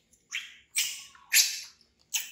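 Baby monkey screaming in fright: three short, high shrieks in quick succession, each louder than the one before.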